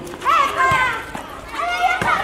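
Children calling and shouting while playing volleyball, with a couple of sharp knocks of hands hitting the ball.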